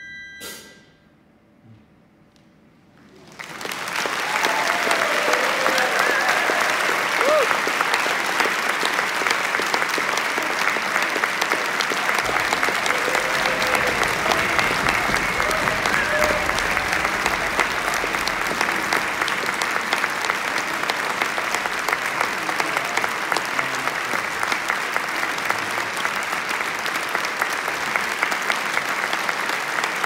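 Concert audience applauding at the end of a wind band's performance. The band's last held chord stops half a second in, there are about three seconds of hush, then applause breaks out and carries on steadily, with a few cheering voices over it.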